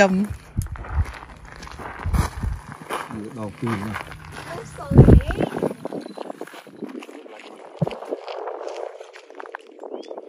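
People talking quietly on the water's edge, with a loud low thump about five seconds in; after that the sound changes to a steady hiss of outdoor air with faint voices.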